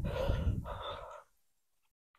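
A person's long, breathy exhale close on a clip-on microphone, with a rumble of breath on the mic, stopping a little over a second in.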